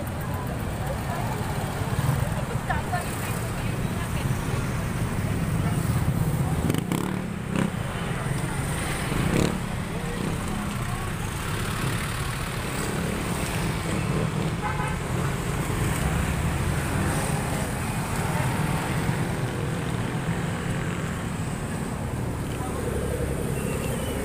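Road traffic: cars and motorcycles running and passing close by under a steady low rumble, with people talking in the background.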